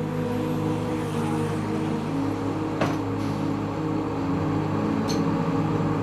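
City bus engine running with traffic noise, over soft held tones of ambient music. A short click a little before the middle.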